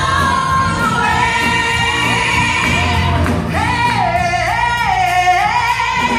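A woman singing a gospel song live into a microphone over instrumental accompaniment, holding long notes with slides and runs; in the second half she steps down through a few held notes and then swoops back up.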